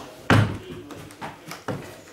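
A single thump about a third of a second in, followed by a few lighter knocks: hands striking and patting a large cardboard box.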